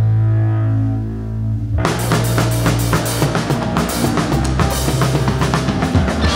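Live rock band playing. A held low note sounds for the first couple of seconds, then the drum kit comes in with rapid, dense hits on drums and cymbals under the band.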